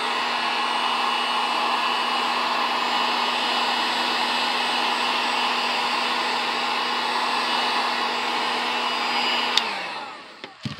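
Drill Master heat gun running on its high setting, blowing hot air over sanded EVA foam to seal it: a steady rush of air with a constant low motor hum. Near the end it is switched off with a click and winds down.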